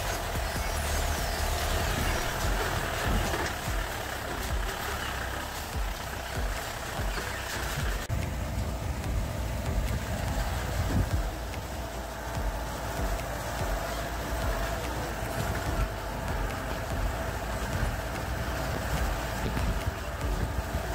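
Off-road jeep engine running under load as it drives slowly along a rough dirt forest track, with a steady low rumble from the engine and the ride over the bumpy ground.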